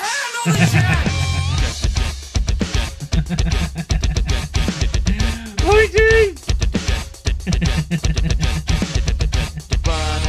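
A three-string electric guitar, distorted, playing heavy djent-style riffs over drums: fast, low, chugging notes with a few bent high notes near the start and again about six seconds in.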